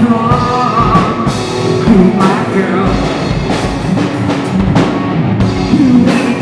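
Live rock band playing loud: drum kit with cymbal crashes and electric guitar, with a singer's voice over them.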